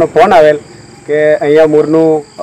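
A man speaking, over a steady high-pitched chirring of crickets.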